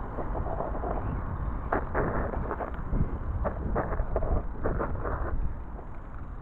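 Wind rumble on the GoPro's microphone and tyre noise from a BMX bike rolling downhill on asphalt, with an irregular run of sharp knocks and rattles from about two seconds in until near the end.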